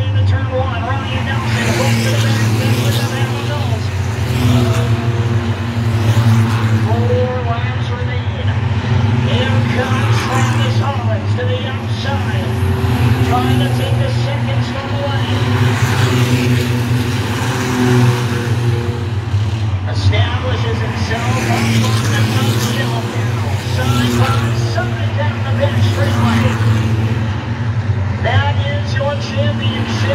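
A pack of Six Shooters-class short-track stock cars racing around the oval, engines running hard together, with cars passing by again and again. A loudspeaker voice carries indistinctly over the engines.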